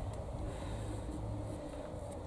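Steady low rumble of gusting wind on the microphone, with faint distant noise from a festival sound system warming up.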